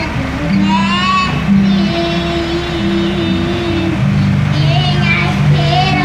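A girl singing a Portuguese gospel song into a microphone over a backing track with long held low notes, with a few short rising sung phrases about a second in and again near the end. Truck engine and road noise run beneath.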